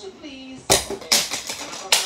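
A ruler launched from a homemade catapult clattering and bouncing on a wooden floor: a sharp clack a little under a second in, a few more clacks after it, and another sharp one near the end.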